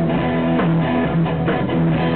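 Band music with guitar to the fore, playing steadily through a short gap between sung lines.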